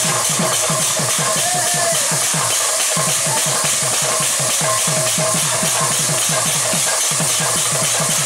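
Two-headed hand drum played in fast kirtan rhythm, about five strokes a second, the low strokes each sliding down in pitch. A steady high hiss runs over the drumming.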